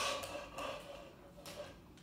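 Faint rustle and light tap of a small fruit snack packet set into a plastic party cup, with the end of a spoken word at the very start.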